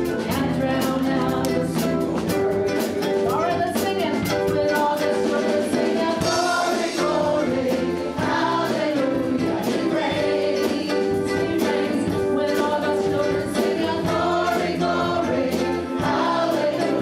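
A live worship band playing: a woman singing lead over keyboard, electric and acoustic guitars, bass guitar and a drum kit.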